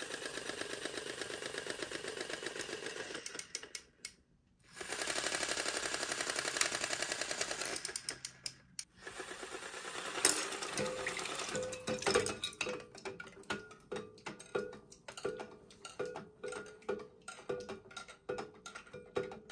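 Pull-string clockwork mechanism of a Bluey swimming bath toy whirring fast in two long runs of several seconds as it unwinds. Then, placed in a bowl of water, it runs on with a regular clicking beat a bit more than once a second as its limbs paddle.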